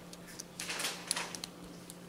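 A few faint metallic clicks and scrapes as small pliers tips work against the steel head of a Craftsman 1/2-inch drive ratcheting breaker bar adapter, compressing an internal clip to lift it out.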